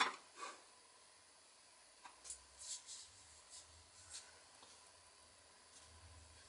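Faint, scattered soft strokes and dabs of a paintbrush laying white acrylic on black paper and picking up paint from a plastic palette. Most of them come in a cluster between about two and four seconds in.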